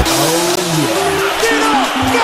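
Car horns honking in held notes, with a motor revving up and back down in the first second, amid a street full of slow-moving cars and scooters.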